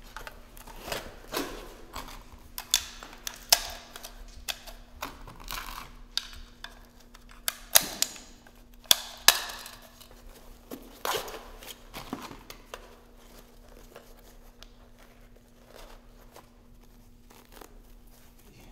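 Gear being handled: rustling and tearing sounds of fabric straps on a tactical vest and a cloth forearm wrap, with scattered sharp clicks, busy at first and thinning out in the last few seconds, over a faint steady hum.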